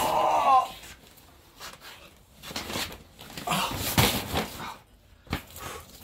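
A man's short strained groan as he hauls out a heavy cardboard box, followed a few seconds later by the cardboard box scraping and thumping as it is set down on the floor.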